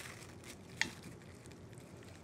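Faint sounds of cubed raw tuna being mixed by hand and with a small wooden utensil in its marinade in an enamel dish, with one short click a little under a second in.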